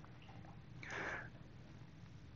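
A person's short breath drawn in through the nose, once, about a second in, over a faint steady low hum.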